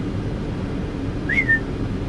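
A person whistles once, a short note that rises and then dips, to call a dog, over the steady low rumble of an idling semi-truck.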